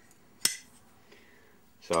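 A single sharp metallic click about half a second in, with a short ring: a small steel tool meeting the magnet of a British Anzani outboard's magneto flywheel as its magnet strength is being checked.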